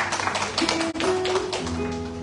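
Classical guitar played hard with a rapid run of percussive strums and taps on the strings, then settling into held notes that ring out about a second and a half in.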